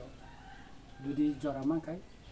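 A rooster crowing faintly in the background, one drawn-out call in the first second, before a man's voice resumes about a second in.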